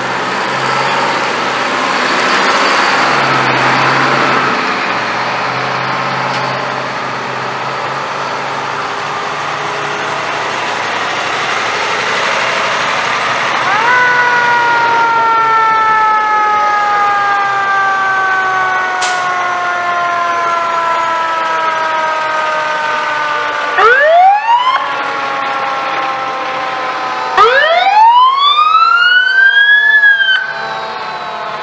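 Parade fire trucks passing with engines running; about halfway through a fire-truck siren winds up and then slowly falls in pitch as it coasts down, typical of a mechanical siren. Near the end come two loud rising siren wails, the second longer.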